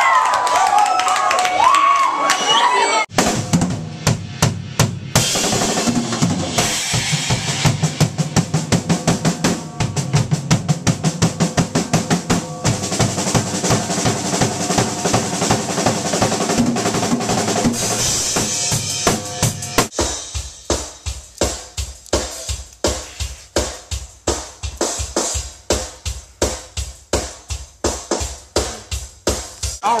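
Band music driven by a full drum kit, with bass drum and snare. It enters after a few seconds of shouting voices. About two-thirds of the way through, the other instruments drop out, leaving a steady drum beat.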